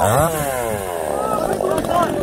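Two-stroke chainsaw revved sharply at the start, its pitch falling back over about a second and a half as the throttle is let off.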